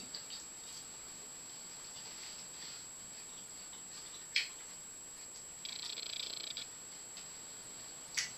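Faint chewing of crisp raw yacon tuber, hard like an apple. A fork clicks once on the plate about four seconds in, and there is a short crackle of chewing a couple of seconds later.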